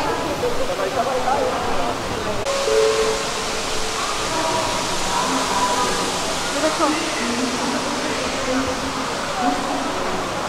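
Steady rushing water in a cloud-forest conservatory, with scattered chatter of visitors. The rush steps up and turns brighter about two and a half seconds in.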